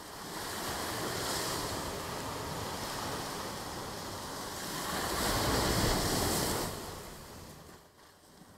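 Ocean surf washing onto a beach, with some wind on the microphone. It fades in over the first second, swells louder about five seconds in, then dies away near the end.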